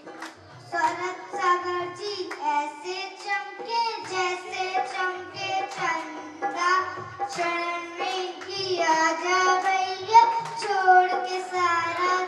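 A young girl singing a Hindi devotional song solo into a microphone, her voice carrying a bending melodic line, with soft low beats repeating underneath.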